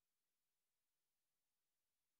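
Near silence: only a faint, even hiss on an otherwise empty sound track.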